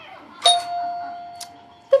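A doorbell rings once: a single chime tone that starts about half a second in and fades away over about a second and a half.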